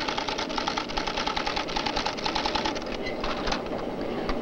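IBM 1440 console typewriter automatically typing out the computer's reply to an inventory inquiry: a fast, even clatter of type strikes.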